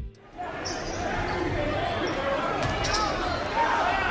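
Live game sound in a basketball gym: a basketball bouncing on the hardwood court amid the chatter of the crowd and players.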